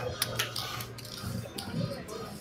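A few light clicks of casino chips being picked up and set down on the felt of a baccarat table, over a low steady hum.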